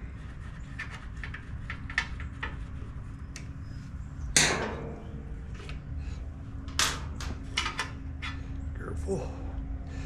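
Small metallic clicks and taps of a quarter-inch nut driver and loose engine parts being handled on a small mower engine, with a louder clatter about four seconds in and a cluster of clicks near the end, over a steady low background hum.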